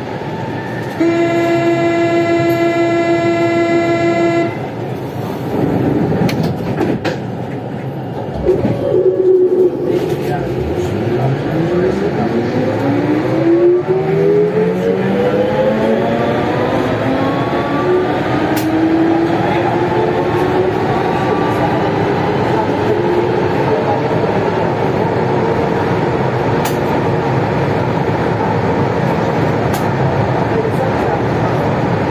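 Siemens VAL 208 NG rubber-tyred metro train heard from on board. About a second in, a steady electronic tone sounds for about three and a half seconds. Then the train pulls away from a standstill, and the whine of its traction motors rises in pitch as it accelerates over the running noise.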